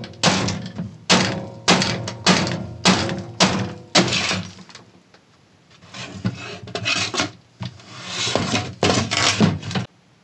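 Particleboard cabinet of an Altec Lansing computer-speaker subwoofer being broken open: a series of sharp cracks and knocks, about one every half second for the first few seconds, then more splintering and crunching after a short pause.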